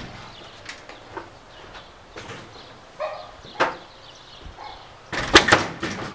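Door chain guard being fitted with a few light metal clicks and knocks, then a quick run of loud bangs near the end as a man forces the door open against the chain and tears through it.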